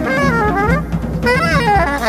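Saxophone in an improvised jazz duo with drums, playing wavering, sliding lines over a low drum rumble and hits.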